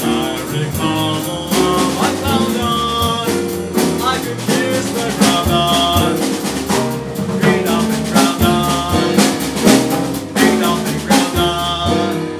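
Live jazz combo playing: busy drum kit with many sharp hits, piano and upright bass, with a male singer's voice at times.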